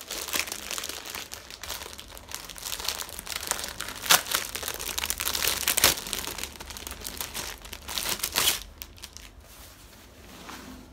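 Clear plastic packaging bag crinkling as it is opened and handled, with sharper, louder crackles about four and six seconds in and again near eight and a half seconds, then quieter near the end.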